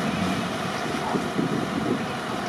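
Steady noise of off-road vehicles' engines running, with wind on the microphone.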